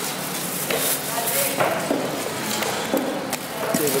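A knife and raw tuna being worked on a wet wooden chopping block: a run of scraping and wet handling noises, with voices talking in the background.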